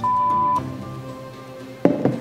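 A censor bleep: a pure, steady 1 kHz beep lasting about half a second, over soft background music. A single short knock comes near the end.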